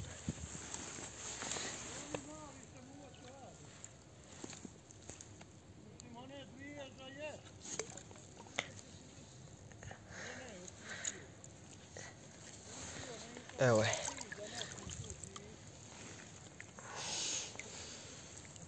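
A hooked roach splashing at the surface as it is drawn in to the bank, with light sloshing of water. A brief, louder sound comes near the end.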